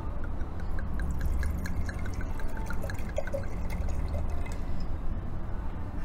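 Red wine pouring from a bottle into a large wine glass. The pour gurgles in a quick, even run of small blips through the first half or so, then runs on more smoothly.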